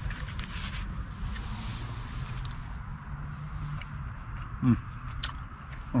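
Light clicks of plastic cutlery on a plastic camping bowl as food is cut and eaten, over a low steady hum of outdoor background. Near the end, a man's appreciative "mm" while tasting the food.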